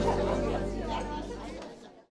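Group chatter at a table over background music, the whole mix fading steadily out to silence by the end.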